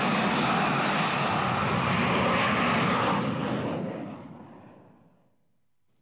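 Jet airliner taking off at close range: loud, steady jet engine noise that fades away over the second half.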